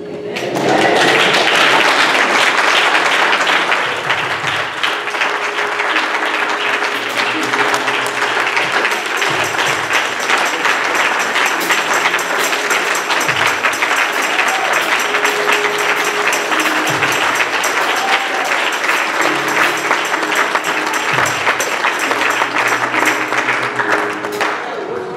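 A congregation clapping, starting about a second in and going on steadily, with music of low held notes playing underneath.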